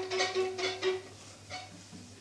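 String players tapping their bows on the strings of violin and cellos, about four or five light taps a second over a ringing note, fading out after about a second.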